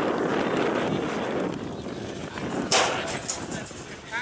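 Indistinct voices of players and spectators over outdoor field noise with wind on the microphone, and one sharp impact sound a little past halfway, the loudest moment.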